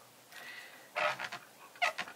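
Damp stamp chamois rubbed over a clear stamp to wipe the ink off: a short rubbing rasp about a second in and a brief squeak near the end.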